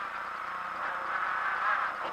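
Renault Clio rally car's engine and road noise heard from inside the cabin, steady at speed on a tarmac stage.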